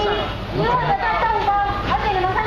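People talking, one voice after another with no break, over a faint low background hum.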